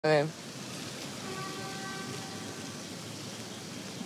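A clipped fragment of a voice at the very start, then the steady hiss of outdoor street ambience in a city square, with a faint held tone briefly in the middle.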